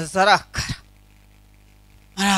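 A woman's voice through a microphone: a short burst of speech with a brief throaty sound in the first second, then a pause filled only by a low steady hum.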